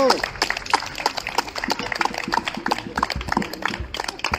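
Audience clapping, with a short shout or cheer at the start and scattered voices over the applause.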